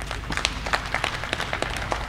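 An audience applauding, with many uneven, scattered claps.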